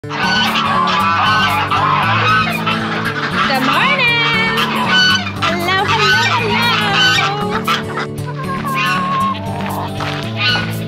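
Poultry calling over background music with a steady beat. Several calls that rise and fall in pitch stand out in the middle.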